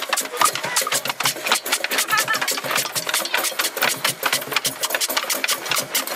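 Hand percussion: bongos and a cajón played by hand in a quick, dense rhythm of strokes.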